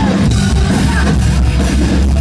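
Live rock band playing loud: drum kit, electric guitar and bass, with a heavy, boomy low end.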